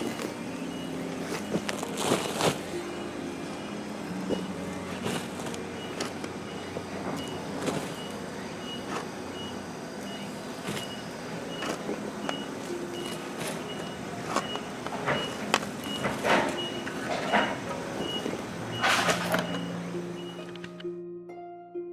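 Soft background music of slow sustained notes over intermittent scrapes and thuds of soil being shovelled onto a buried rooster. A faint high beep repeats about twice a second from about a quarter of the way in.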